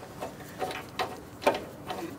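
A few light, separate metallic clicks from a spark plug socket wrench as a spark plug is threaded back by hand into a small OHV engine's aluminium cylinder head.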